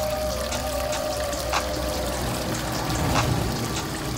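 Water streaming from thin spouts of a stone wall fountain into a basin, a steady splashing pour, with background music playing over it.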